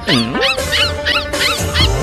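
Puppies giving short, high, repeated yips, about three a second, over background music.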